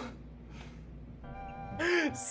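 A steady musical chord comes in just past halfway, and near the end a person lets out a short, loud vocal cry.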